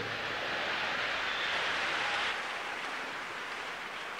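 Crowd noise from a large congregation, a steady, indistinct wash of many people murmuring and praying at once with no single voice standing out, easing off a little after about two seconds.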